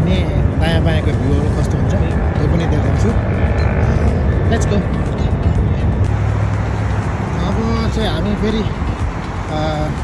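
Steady rumble of road traffic mixed with people's voices and music.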